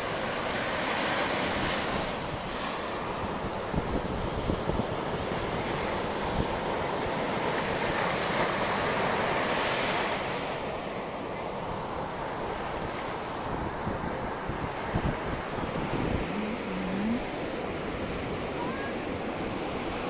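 Ocean surf breaking and washing up the sand, swelling louder twice, with wind buffeting the microphone.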